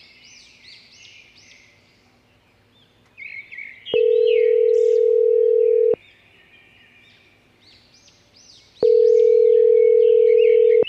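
Telephone ringing tone heard through a mobile phone as a call rings out: a steady tone held about two seconds, twice, with about three seconds between. Birds chirp throughout.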